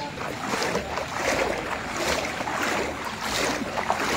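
Floodwater sloshing and splashing in an irregular, continuous churn, with wind buffeting the microphone.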